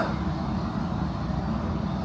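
A steady low rumble of background room noise, with no other event standing out.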